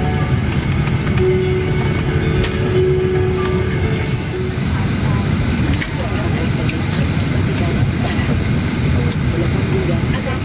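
Steady rumble of a Boeing 737-800 cabin at the gate, with music playing over it for the first few seconds and indistinct passenger chatter. Scattered clicks and knocks come from overhead bins being shut.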